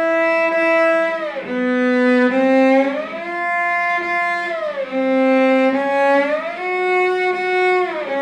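Cello bowed on one string, shifting repeatedly up and down between first and fourth position, with short, light slides joining each low note to the higher one and back. The finger's weight is eased off during each shift to keep the glissando small.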